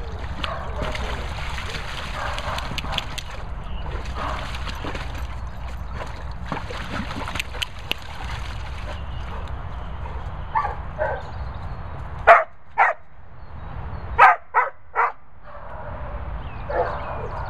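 Water splashing as a dog paws and stamps in a paddling pool, then dogs barking in the last third: a few lighter barks, then two and three loud, sharp barks near the end.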